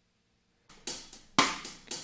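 A recorded drum loop starts playing back about two-thirds of a second in: sharp drum hits with hi-hat and cymbal, roughly two a second.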